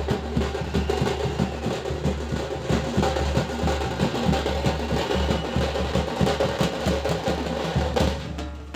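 A street drum band beating several large bass drums with sticks in a fast, dense, steady rhythm, with a deep continuous boom under the strikes.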